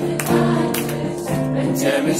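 Live band music with many voices singing together as a choir, over a steady beat.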